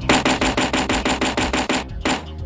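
A rapid, even train of sharp clicks or knocks, about ten a second, starting suddenly and cutting off just before the end.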